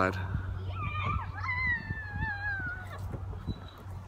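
A child's long, high-pitched vocal call, wavering at first and then drawn out, falling slowly in pitch.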